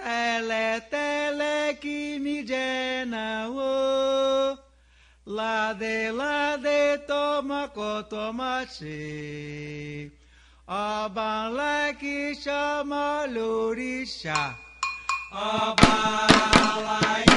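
Solo voice chanting a Candomblé song for Oxalá in Yoruba, unaccompanied, in short phrases with brief pauses between them. Near the end, atabaque hand drums begin to strike.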